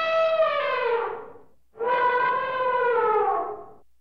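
An animal's long, clear call that holds its pitch and then slides down and fades, followed just after by a second similar call about two seconds long that also falls away at its end.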